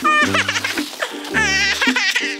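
Background music with a repeating bass note, and a man laughing over it.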